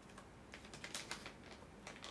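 Faint crinkling and clicking of a plastic snack pouch as nuts are picked out of it, a quick run of crackles about half a second in and a few more near the end.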